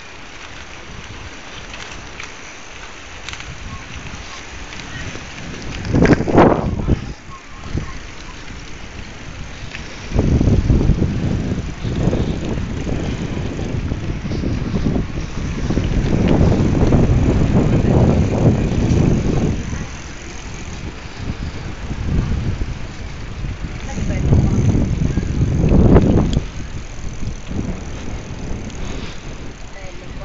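Wind buffeting the microphone of a camera carried on a moving bicycle, coming in gusts: a short one about six seconds in, a long stretch from about ten to twenty seconds, and another building to a peak around twenty-six seconds, over a steady rush of moving air.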